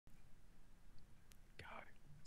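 Near silence: faint room tone, with a brief faint whisper of a voice near the end.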